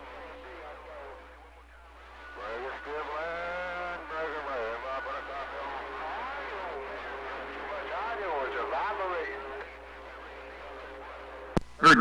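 Another station's voice coming in over a CB radio receiver, thin and muffled through the radio's speaker with a steady low hum underneath; the voice starts about two seconds in and drops out near ten seconds. A click comes near the end.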